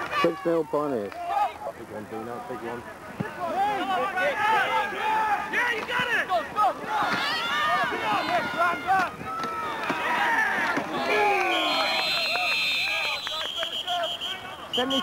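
Many voices shouting over each other as an American football play runs: players and sideline onlookers calling out. Near the end a referee's whistle blows a steady shrill note for about two seconds as the play ends in a tackle.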